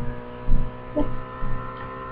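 Steady electrical hum with several fixed tones, the kind a cheap microphone or computer picks up, broken by a couple of soft low bumps about half a second and a second in.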